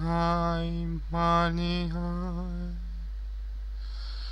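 Background music: a slow, chant-like solo voice singing long held notes in two phrases over a steady low hum. The second phrase fades out about three seconds in.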